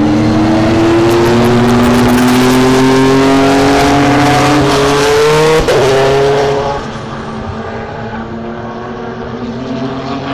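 Chevrolet Corvette GT race car's V8 engine at full throttle, its pitch climbing steadily for about five seconds and then breaking off with a sudden drop as it shifts. The sound then falls away to a fainter race engine note, harsh and distorted through a small camera microphone.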